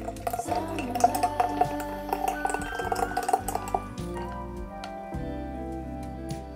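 Orange juice pouring in a thin stream into a glass pitcher, a splashing trickle that stops about four seconds in, heard over background music.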